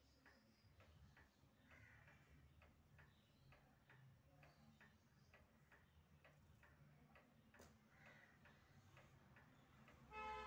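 Near silence with a faint, regular ticking, about two to three ticks a second, and one sharper click about three quarters of the way through.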